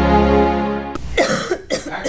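A held music chord cuts off abruptly about halfway through. A woman then coughs several times into a tissue.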